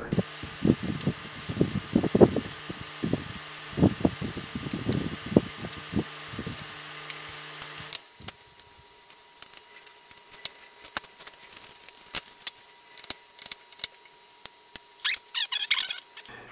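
Plastic parts of a battery-operated LED puck light being handled and fitted together: irregular knocks and rubbing in the first half, then lighter scattered clicks as the pieces snap into place.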